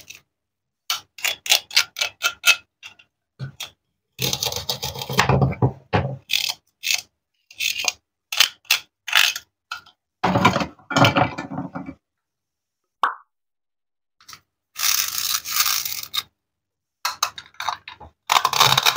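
Plastic toy fruit pieces being handled and set down: bursts of clicks, taps and rustling separated by silent gaps, with one short squeak near the middle.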